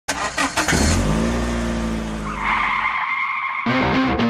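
A car engine running with a steady note after a few quick knocks, then a tire squeal of about a second. Electric guitar music cuts in abruptly near the end.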